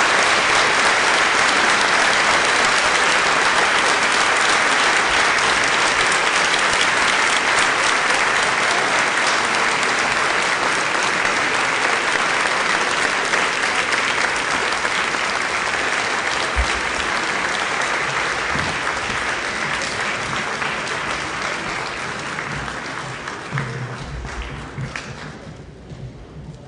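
Audience applauding steadily, the applause thinning and fading out near the end.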